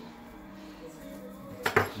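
Faint music in the background, then near the end two sharp clinks of kitchenware on the counter, like a metal knife being picked up.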